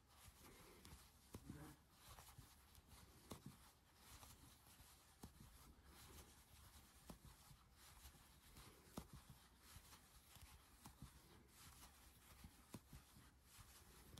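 Near silence: faint scratching of yarn and light ticks of a metal crochet hook as single crochets are worked steadily.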